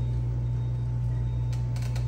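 A steady, low-pitched mechanical hum that holds level throughout, with a faint steady high tone above it.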